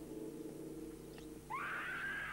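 A woman's high scream, rising and then falling over about a second, starting about a second and a half in: the house's doorbell, which rings as a scream. Before it, a low steady hum.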